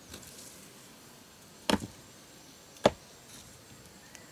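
Two sharp knocks of stone set down on stone, a little over a second apart, as rocks are stacked into a wall.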